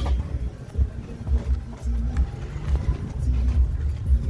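Wind buffeting the microphone outdoors: an uneven low rumble that swells and drops.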